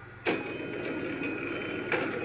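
Sudden mechanical clunk about a quarter second in, then a steady running noise from a commuter train standing at the platform.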